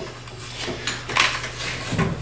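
Handling noise as an AR-15 rifle is lifted and shifted on the foam of a hard case: a few soft scrapes and light knocks, the clearest past the middle and near the end.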